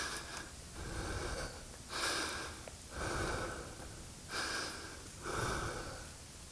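A person breathing heavily close to a helmet microphone: about three breaths, each a short hissy intake followed by a longer exhale.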